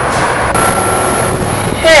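Steady outdoor background noise, an even hiss across the whole range, with a faint thin tone through the middle second. A voice begins right at the end.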